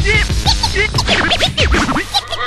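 DJ turntable scratching of chopped vocal samples over a hip hop beat: quick back-and-forth pitch swoops, several a second, above a steady bass.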